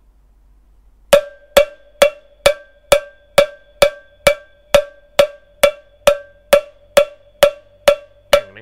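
Two wooden drumsticks clicked together in a steady beat, about two clicks a second, starting about a second in. Each click has a short ring at one clear pitch.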